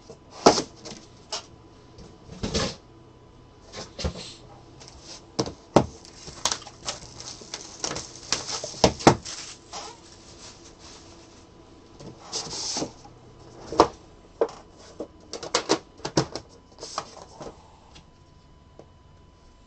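Irregular clicks, knocks and short rustles of trading-card boxes and packaging being handled on a table.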